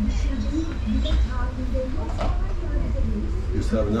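Indistinct speech: people talking over a steady low rumble.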